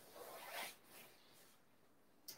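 Faint rustling of a jiu-jitsu gi and a body shifting on a mat, lasting about half a second before it fades to near silence.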